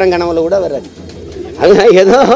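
A man's voice, drawn out and wavering in pitch, over background music, with a quieter stretch in the middle.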